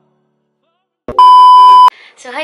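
A loud electronic beep, one steady high tone lasting under a second, starting after about a second of near silence and cutting off suddenly.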